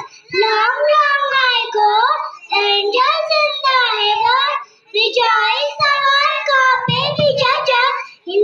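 Young children singing a song into a microphone, in phrases of held notes with short breaks between them, one a little longer about five seconds in.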